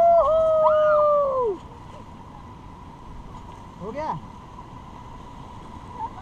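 A high voice holds one long cry for about a second and a half at the start, over the steady rush of river water, which carries on alone afterwards.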